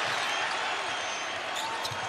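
Basketball game sound: steady arena crowd noise with a ball being dribbled on the hardwood court and a few brief sneaker squeaks.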